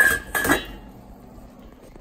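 Stainless steel pot lid clanking twice against the rim of a stockpot, about half a second apart, each knock followed by a brief metallic ring.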